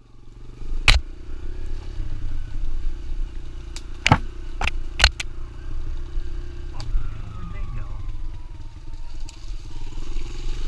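Kawasaki KLX140L dirt bike's single-cylinder four-stroke engine running steadily at low speed on a rough trail. Sharp knocks and clatter come about a second in and several times around four to five seconds in, as the bike jolts over bumps and brushes through branches.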